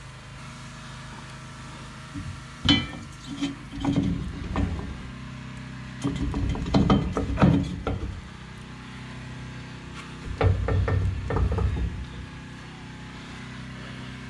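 Two-inch square steel tubing being worked into a Jeep's receiver hitch, a tight fit in the Line-X-coated bumper: clunking and steel scraping on steel in four bursts, starting with a sharp clank about three seconds in. A steady low hum runs underneath.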